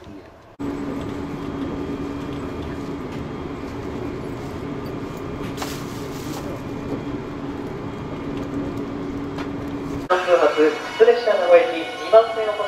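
Steady running noise of an electric train heard from inside the passenger car, a continuous rumble with a constant hum, starting suddenly about half a second in. About ten seconds in it cuts to a person's voice over the noise of a station platform.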